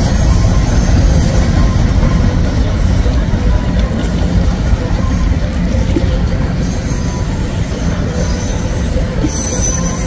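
Freight train of covered hopper cars rolling past, a steady rumble of wheels on rails with faint thin squeals from the wheels.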